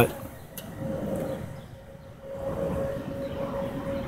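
A steady low rumble with a single steady humming tone that grows stronger about two seconds in, like a machine or engine running; one faint click just after the start.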